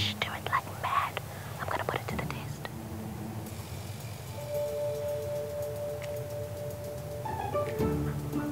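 A woman whispering for the first couple of seconds, then soft background music with long held notes comes in about halfway through.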